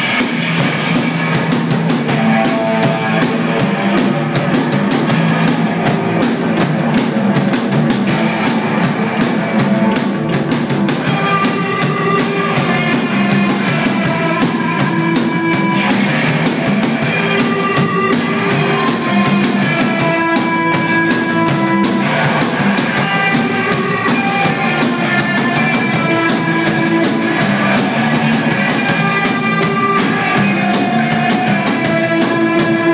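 Live rock band playing an instrumental passage: drum kit, bass and electric guitars, loud and steady, with held guitar notes ringing over the beat.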